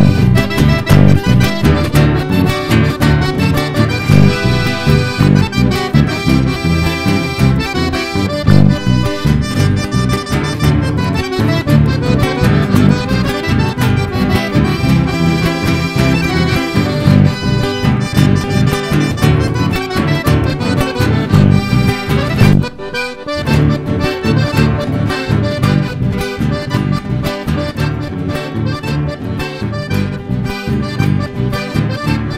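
A chamamé played live on accordion, two acoustic guitars and electric bass, with the accordion carrying the tune over a steady rhythm and no singing. The band drops out briefly about three-quarters of the way through, then picks straight back up.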